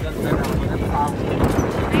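People talking and laughing over a steady noisy outdoor background, with a voice breaking through about a second in.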